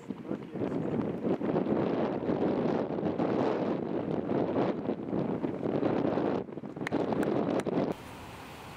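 Wind buffeting the camera microphone: a loud, unsteady rushing noise, with a brief drop about six and a half seconds in and a few faint clicks near the end.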